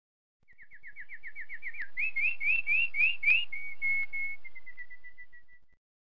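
A songbird singing one phrase: a fast trill of down-slurred notes, then about six louder rising notes, then a run of steady notes that fade. It cuts off suddenly near the end.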